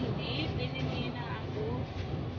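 Steady low rumble of a passenger van's engine and road noise heard inside the cabin, with passengers' voices faintly in the background.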